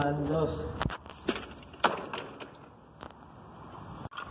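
A handful of sharp knocks and taps, irregularly spaced and loudest about two seconds in, from a rusty metal frame being handled and carried. A voice is heard briefly at the start.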